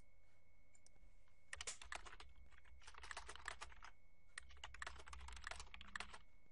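Typing on a computer keyboard: three quick runs of keystrokes, the first starting about a second and a half in, at a low level.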